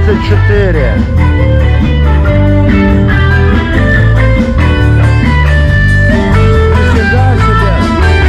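Live band playing loudly, electric guitar over a heavy, shifting bass line.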